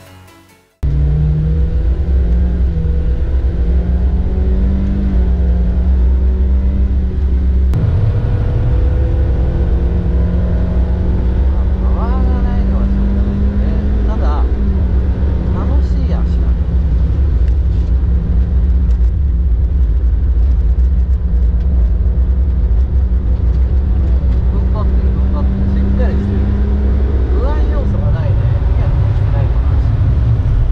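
Toyota Vitz GR's petrol engine heard from inside the cabin, running hard at a near-steady pitch on a circuit lap. The pitch drops sharply about eight seconds in, then holds again, and falls once more near the end.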